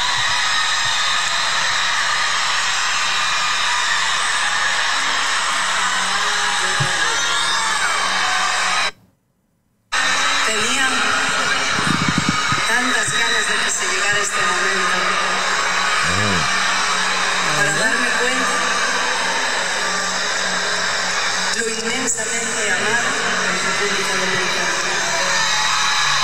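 A concert video played from a phone held to the microphone: a dense, steady din of crowd noise with music and indistinct voices. It cuts out completely for about a second, roughly nine seconds in.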